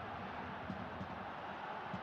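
Football stadium crowd noise: a steady din of the crowd, with faint short low knocks scattered through it.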